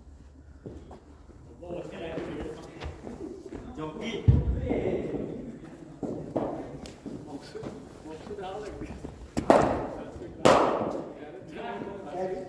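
Cricket ball impacts echoing around an indoor nets hall: a deep thud about four seconds in, then two sharp knocks a second apart near the end, over indistinct voices.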